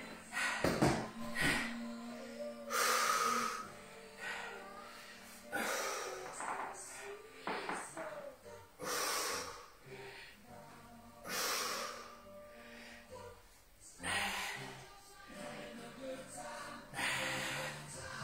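A woman exhaling hard and noisily about every two and a half to three seconds, once per rep of a dumbbell floor chest press, over background music.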